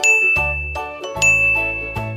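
Two bright, ringing ding chimes about a second apart, over background music.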